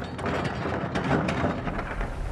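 Excavator bucket scooping into a pile of large quarried rock on a steel barge deck, the rocks clattering and grinding with many small knocks. The clatter dies away near the end.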